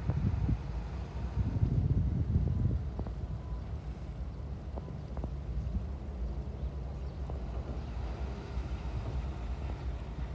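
Low, steady rumble of wind on the microphone mixed with engine noise, heaviest in the first three seconds and then settling lower.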